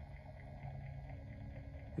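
Faint steady low hum of a small electric rotating display turntable turning, with a second faint low tone joining about halfway through.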